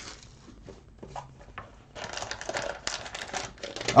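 A few light ticks, then from about two seconds in a steady crinkling of a foil trading-card pack wrapper being handled.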